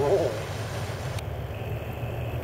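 Jeep Wrangler engine running at low speed, a steady low rumble, as the Jeep crawls slowly over deep ruts on a dirt trail.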